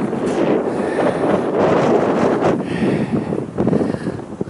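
Strong wind blowing across the camera's microphone: a loud, uneven rush of noise that swells and drops with the gusts.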